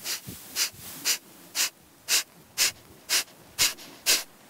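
A person doing rapid yogic breathing: short, sharp, forceful exhales through the nose, driven by the diaphragm pulling in and out. The puffs come at an even pace of about two a second.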